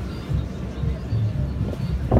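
Low, steady rumble of outdoor ambience on an open ship deck, with faint music in the background.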